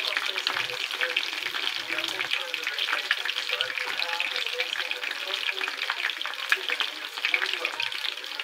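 Battered tempura pieces frying in a pan of hot oil: a steady, dense crackling sizzle of bubbling oil.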